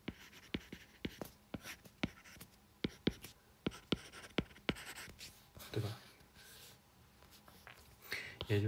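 Stylus tip tapping and scratching on a tablet's glass screen while writing out an equation by hand: a string of sharp, irregular clicks, several a second, that stop about five seconds in. A brief murmured voice follows near six seconds.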